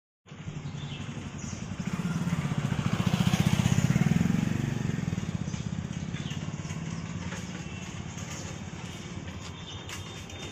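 Engine of a passing motor vehicle, growing louder to a peak about three to four seconds in, then slowly fading.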